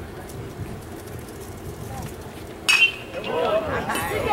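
A metal baseball bat hitting a pitched ball: one sharp ping with a brief ring about two and a half seconds in. Voices shout and cheer right after it.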